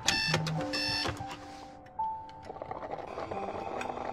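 A digital alarm clock beeping twice: two short electronic beeps within the first second. Soft background music plays underneath.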